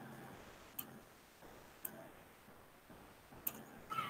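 Four faint, scattered clicks of a computer mouse, spread a second or more apart, over low background hiss.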